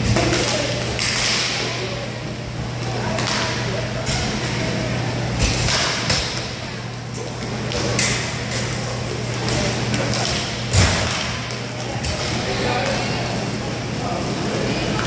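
Inline hockey play on a plastic rink floor: sticks knocking the puck and each other in a series of sharp clacks, the loudest about three-quarters of the way through, over a steady low hum in the hall.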